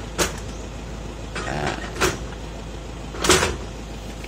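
A few brief rustles and knocks from hands handling freshly picked cacao pods among the leaves, the loudest about three seconds in, over a steady low rumble.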